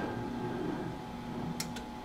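Quiet steady hum with faint rubbing as a 12 mm drawn steel wire sample is run through the rollers of an ultrasonic wire transducer holder. Two sharp clicks come close together near the end.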